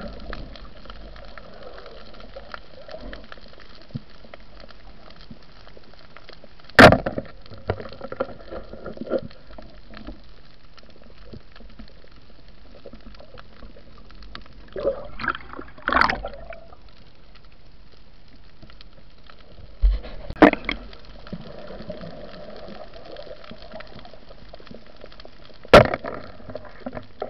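Underwater sound through a waterproof camera housing: a steady hiss of water with several sharp knocks and clatters, the loudest about seven seconds in, more around fifteen and sixteen seconds, twenty seconds and just before the end.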